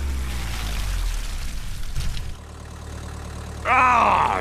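A motor vehicle's engine running with a steady low rumble, which drops in level a little past halfway. A short vocal cry comes near the end.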